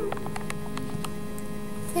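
Steady low electrical hum with a few faint clicks.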